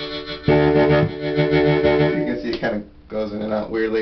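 Blues harmonica played into a cupped microphone through a homemade 25 W solid-state harp amp (LM1875 chip amp with a 'Professor Tweed' preamp), set to its cleanest sound. It plays held chords, with a short break a little before three seconds in.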